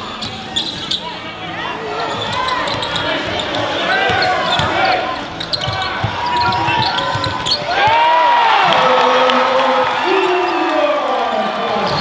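Live basketball game on a hardwood court: the ball bouncing amid overlapping shouts from players and spectators, with the voices growing louder about eight seconds in.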